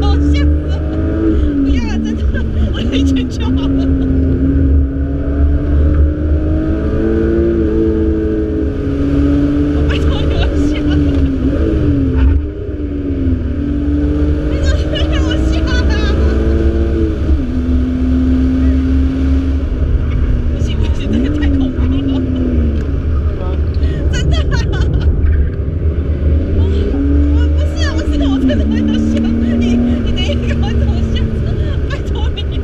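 Car engine heard from inside the cabin during hard track driving, its pitch climbing and falling back several times as the driver works through the gears and corners, over a steady low road rumble.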